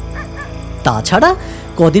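A dog giving one short yelping whine about a second in, its pitch sweeping up and falling back, over a low steady background-music drone.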